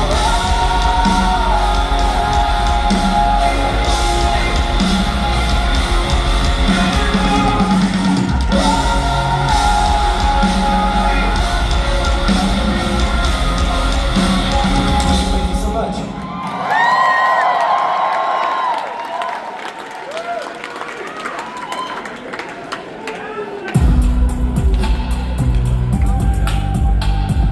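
Live rock band playing loud through a concert hall PA, with distorted electric guitars, bass, drums and vocals. About two-thirds of the way in the band drops away to a held vocal note and a quieter passage. Near the end the full heavy sound crashes back in.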